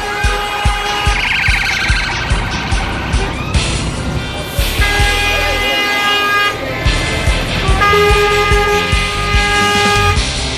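Lorry air horns blowing in long held blasts, one near the start and two longer ones in the second half, over rock music with a steady beat.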